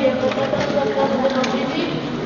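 Speech: children's voices delivering dialogue on stage.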